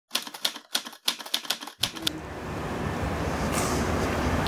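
Typewriter keystroke sound effect: a quick, irregular run of about a dozen sharp key clacks over two seconds. A low street ambience then rises in.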